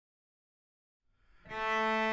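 Silence, then about one and a half seconds in a solo cello starts, bowing one long held note.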